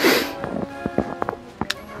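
Background music with a few held notes, opening with a short rush of noise and dotted with light knocks.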